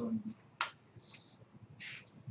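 A single sharp click about half a second in, with faint talk and two brief hissing sounds around it.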